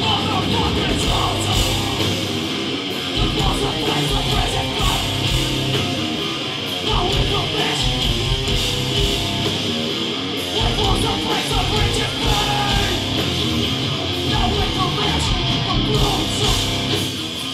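Hardcore punk band playing live through a club PA: distorted electric guitars, bass and drums, loud and steady.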